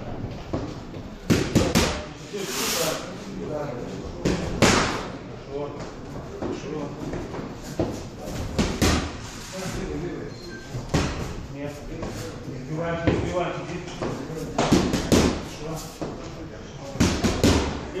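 Boxing-glove punches landing with sharp smacks, several times in quick pairs of two, the double jab known as the postman's punch, echoing in a large gym hall.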